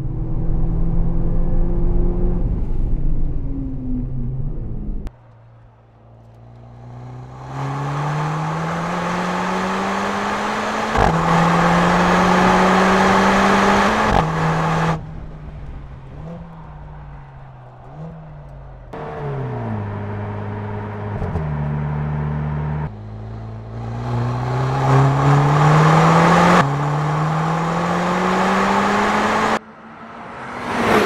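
Mercedes-AMG CLA 45 S's 2.0-litre turbocharged four-cylinder under hard acceleration, its pitch climbing and then dropping sharply at quick upshifts of the eight-speed dual-clutch gearbox, and stepping down through several downshifts in the middle. The level changes abruptly several times.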